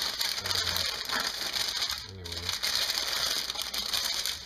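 Parchment paper crinkling and crunching as it is folded and pressed by hand over a lump of warm, cornstarch-dusted homemade clay, a dense run of fine crackles throughout.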